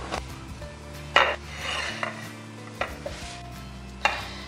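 A square ceramic plate being handled and turned on a granite countertop, with one sharp clink about a second in and lighter knocks near the start and late on. Soft background music plays underneath.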